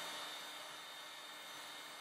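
Electric hot air gun running steadily, a faint even hiss of its fan and air flow.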